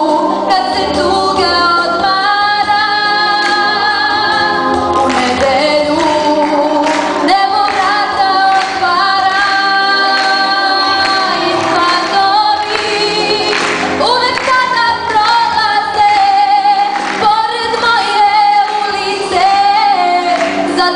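A young female vocalist singing live into a handheld microphone, holding long notes with vibrato.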